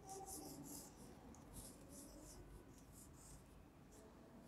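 Marker pen writing on a whiteboard: faint, short strokes in quick succession.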